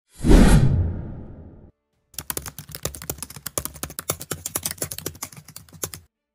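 Intro sound effects: a loud whooshing hit that fades away over about a second and a half, then, after a short gap, a rapid run of keyboard-typing clicks, several a second, for about four seconds.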